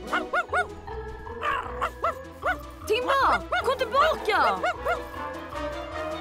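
A cartoon dog barking and yipping in quick short calls over background music with a steady beat, the calls coming thickest about halfway through.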